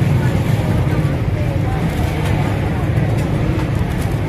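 Loud, steady low rumble of busy background noise with faint voices mixed in.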